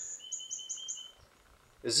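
A bird chirping a quick run of about six short, high notes in the first second, then falling quiet.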